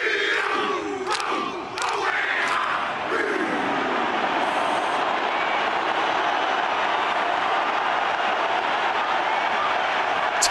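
Men shouting haka calls over a large stadium crowd in the first few seconds, then from about three seconds in a steady roar from the crowd.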